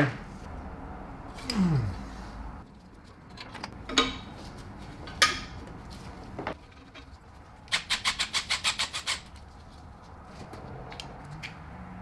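Sharp metallic knocks of tools on the car's underside, then a quick even run of about a dozen ratchet clicks, roughly eight a second: a 22 mm ratcheting wrench turning out an exhaust oxygen sensor.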